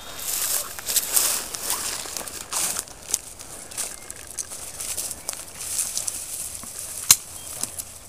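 Dry brush and clothing rustling and crackling close to the microphone in irregular bursts, with one sharp click about seven seconds in.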